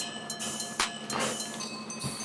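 Wire potato masher pressing boiled, skin-on potatoes in a stainless steel bowl: soft irregular squishing strokes with the masher scraping the metal, under background music.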